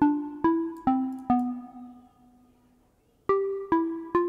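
Ableton Meld software synthesizer in its Fold FM mode playing a looped phrase of short plucked notes, about two a second. The notes step down in pitch to a longer, fading note, and after about a second of silence the phrase starts again near the end.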